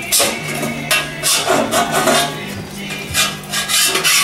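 A body file rasping in repeated strokes across lead body filler on a steel motorcycle fender, shaving down the excess lead, with background music underneath.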